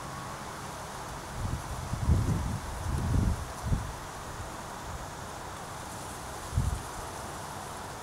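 Outdoor background hiss with a few short, low rumbles of wind buffeting the microphone: a cluster about one and a half to four seconds in and one more near the end.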